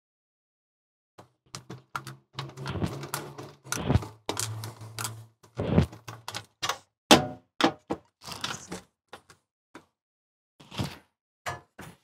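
Screwdriver clicking and knocking against a stainless-steel RV cooktop as its mounting screws are loosened: a quick run of irregular taps and knocks, the loudest about seven seconds in.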